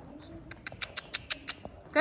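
A quick, even run of about eight sharp clicks over a little more than a second: a person clucking with the tongue to urge a horse on.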